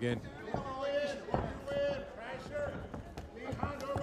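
Shouted voices of corner coaches and crowd around an MMA cage, broken up by a few dull thuds from the fighters' bare feet and kicks on the canvas.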